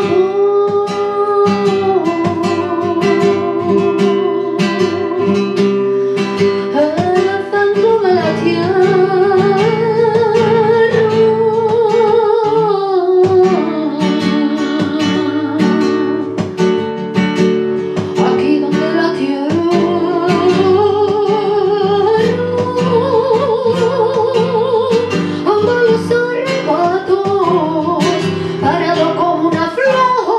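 A woman singing a flamenco song, holding long notes that waver and bend between phrases, accompanied by a strummed and plucked Spanish guitar.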